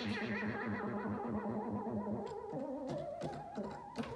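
Moog Grandmother analog synthesizer sounding held notes whose pitch wavers steadily up and down, over a rapid low pulsing. About two and a half seconds in the notes change, and a few short clicks follow near the end.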